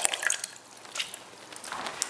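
A few faint drips and small splashes of water as a sponge is wetted in a water pot.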